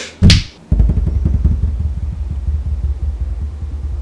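A sharp, very loud burst, then a low steady rumble that sets in under a second in. It is an added magic sound effect marking a wish being granted.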